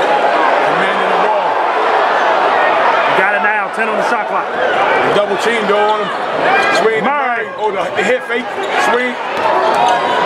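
A basketball bouncing repeatedly on a hardwood court during live play, amid the voices of players and crowd in the gym.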